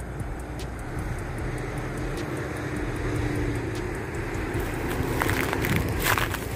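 Steady rumble of distant road traffic heard from a hilltop, with a faint held low hum. Wind rushes over the microphone, growing stronger near the end.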